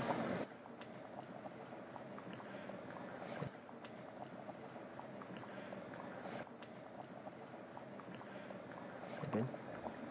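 Faint ladling sounds: a serving spoon scooping thick red-bean stew from a cast-iron Dutch oven and spooning it onto rice in a ceramic bowl, with a few soft taps and scrapes.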